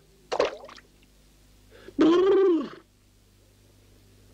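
Cartoon sound effects: a short squeak, then about two seconds in a louder pitched plop, rising and then falling in pitch, as the sleeping cartoon mouse topples into the watering can.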